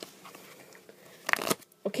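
A deck of playing cards being cut by hand, with a short burst of card noise a little over a second in.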